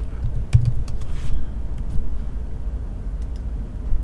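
A few separate computer keyboard key presses over a steady low rumble.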